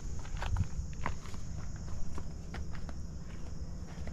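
Footsteps on gravel: a scatter of light crunches and clicks over a low, steady rumble.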